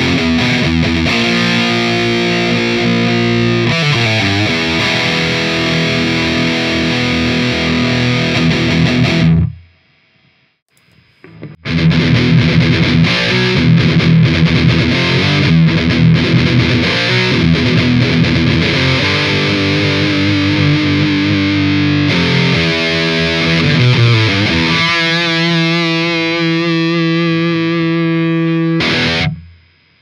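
Les Paul electric guitar played through a distorted Soldano 100-watt amp simulation: a passage of chords and single notes that stops about nine seconds in. After a pause of about two seconds it is played again, longer, ending on held notes with vibrato.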